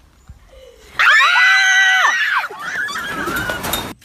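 A loud, high-pitched scream starting about a second in, held at one pitch for about a second and a half and then dropping off, followed by a quieter stretch of mixed noise.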